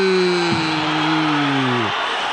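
A football commentator's long, drawn-out goal cry, 'Gooool', held on one vowel and slowly falling in pitch until it breaks off near the end, over steady crowd noise.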